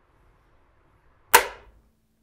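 A single sharp click of a wall light switch being flipped to turn off the lights, about a second and a half in. A faint steady hum starts just after.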